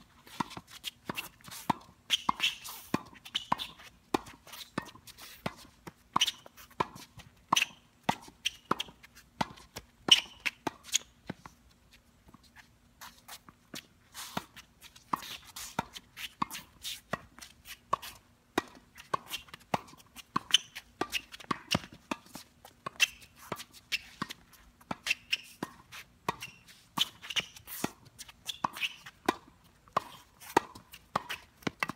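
Tennis balls volleyed back and forth at the net: a steady, rapid run of sharp racket-string pops, about two hits a second, kept up without a break.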